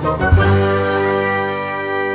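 A short musical sting for a title card: a bright, chime-like chord struck about a third of a second in and left ringing, slowly fading.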